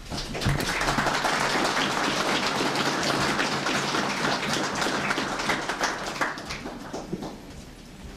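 Audience applauding: many hands clapping together, steady for several seconds before dying away near the end.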